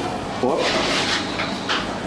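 A man's short surprised "oh" as a potato tortilla is flipped out of a frying pan onto a plate. It is followed by a stretch of pulsing, hiss-like noise.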